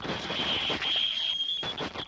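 Experimental tape-collage sound: a steady high whine held over dense crackling, rustling noise, the whine breaking off shortly before the end.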